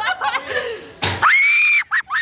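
Women laughing, then about a second in a sudden burst of noise as the slingshot ride launches, followed by one long high-pitched scream from a rider being flung upward.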